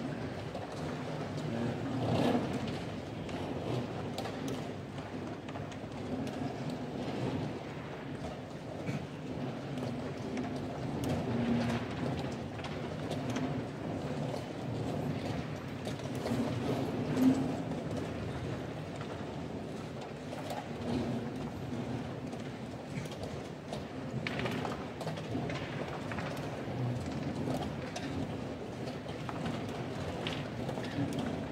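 Hubbub of a busy tournament hall, many indistinct voices talking at once, with occasional sharp clicks of wooden chess pieces and a chess clock being tapped, the loudest about 17 seconds in.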